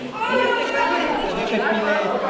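Several people talking at once: overlapping chatter from a crowd in a large hall.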